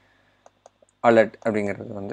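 A few faint clicks of a computer keyboard in use, then speech starting about a second in.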